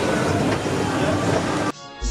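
Reverberant shopping-mall hubbub: indistinct voices over a steady hum of the hall. It cuts off suddenly near the end.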